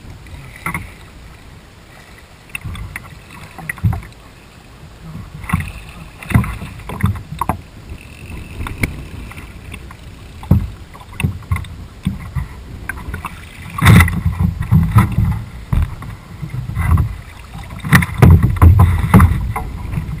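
Knocks and thumps on the deck and hull of a small fishing skiff as the angler shifts his footing while playing a fish on a bent fly rod. Wind rumbles on the microphone throughout, loudest about two-thirds of the way in and again near the end.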